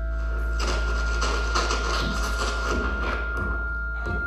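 Live experimental music played through PA speakers: a deep steady bass drone and a sustained high tone, under a dense wash of noisy texture that swells in about half a second in and thins out near the end.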